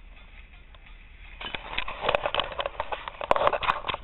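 Faint hiss, then from about a second and a half in a dense run of rustling, crackling and clicking handling noise as the camera is picked up and moved.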